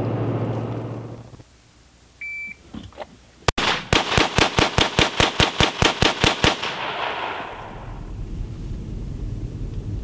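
A short high electronic beep, then one sharp pistol shot and a rapid, evenly spaced string of semi-automatic pistol shots, about seven a second for some two and a half seconds, fired from a pickup truck at a cardboard target.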